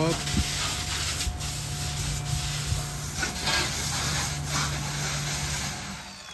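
Pressure washer spraying water onto a truck wheel and tyre, a steady motor hum under the hiss of the spray; the hum stops just before the end.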